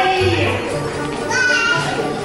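Music with a low bass line playing under the excited calls of a group of young children, with one high child's shout about one and a half seconds in.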